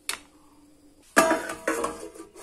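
A single light click of a steel spoon against a plate, then about a second in a loud metallic clatter with a brief ring, twice: a steel plate being set as a lid over a pan.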